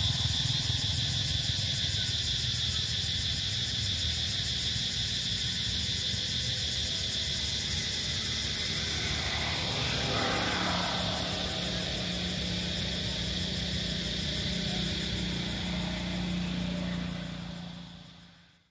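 Outdoor background noise: a steady low rumble under a constant high-pitched drone, with a motor vehicle passing about halfway through, swelling and falling away and leaving a low hum. The sound fades out at the end.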